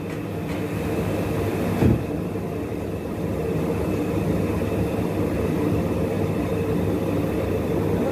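Puffed-rice (muri) making machine running, its rotating drum turning with rice grains tumbling inside and pouring out through the mesh screen: a steady mechanical hum with a rustling clatter of grain. A short knock a little before two seconds in.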